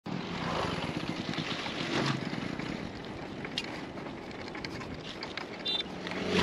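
Wind rushing over the microphone as a bicycle rolls along an asphalt road, with tyre noise and a few small clicks and rattles. It is a little louder in the first two seconds.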